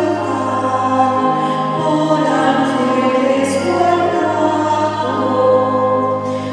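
Choral music: a choir singing slow, sustained chords over held low notes that shift every few seconds.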